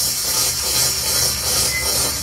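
Live rock concert recording in a lull of the playing: a steady hissing, rasping wash of noise with a faint low hum underneath, between bursts of the band.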